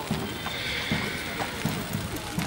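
A horse whinnying: one high call lasting about a second, with people talking in the background.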